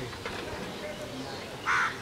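A crow caws once, briefly, near the end, over a faint outdoor background.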